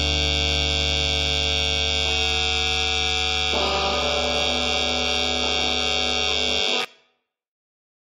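The final chord of a distorted grunge-punk rock song, held and ringing on. A few of its upper notes shift about two and three and a half seconds in, and then it cuts off suddenly just before seven seconds.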